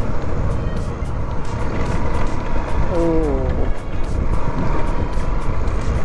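Motorcycle on the move: steady wind rush over the camera microphone mixed with the engine running. A brief voice sounds about three seconds in.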